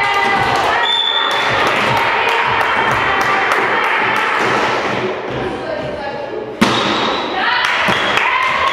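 Volleyball rally in a gym: players' voices calling and shouting over short knocks of the ball and feet, with one sharp, loud hit of the ball about two-thirds of the way through.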